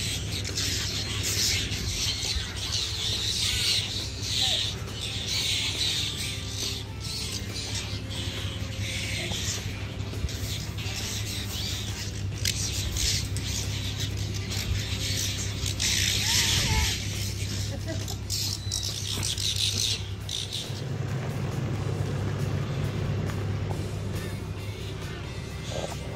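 Background music, steady at an even level.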